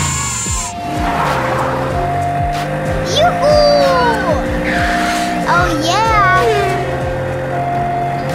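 Two-tone hi-lo ambulance siren, switching between a higher and a lower note about every two-thirds of a second, over background music.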